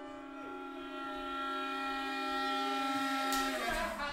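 Live contemporary music: a low sustained note is joined about half a second in by higher held tones, and the chord swells louder. Near the end it breaks off into a short rush of noise.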